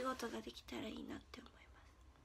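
A young woman's high voice speaking softly, close to a whisper, for about the first second and a half.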